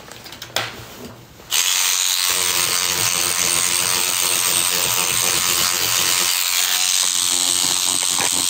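A small motorised tool running steadily with a whirring, grinding noise. It starts suddenly about a second and a half in and keeps going almost to the end.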